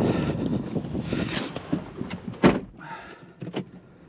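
Shuffling movement as someone climbs into a Chevrolet SUV, then the driver's door shuts with one sharp thump about two and a half seconds in. A couple of faint clicks follow in the quieter, closed cabin.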